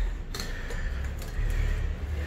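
A door latch clicks once, about a third of a second in, as the door handle is worked open with a plastic hook, over a steady low rumble.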